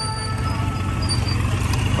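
A cruiser motorcycle's engine running steadily at low speed, a low rumble, with background music.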